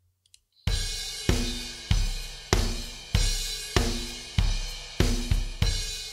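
Sampled drum kit in EZdrummer 2 playing back a basic groove with shaker and tambourine added: bass drum, snare and cymbal hits. It starts about half a second in, with a strong beat falling evenly about every 0.6 s.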